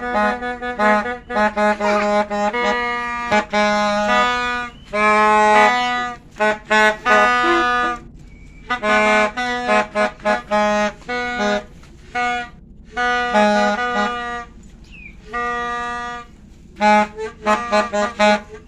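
Toy New Year trumpet (plastic terompet) blown in a string of buzzy honks, some short and some held, the pitch shifting from note to note, with brief pauses between bursts.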